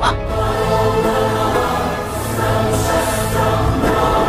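Film score: a choir sings a long, held "aah" chord over a low steady note.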